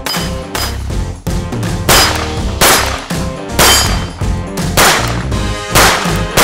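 A string of 9 mm pistol shots from a SIG Sauer P365-series handgun, fired at a steady pace of about one a second, each with a sharp crack and a ringing tail. The shots get louder from about two seconds in, over background music.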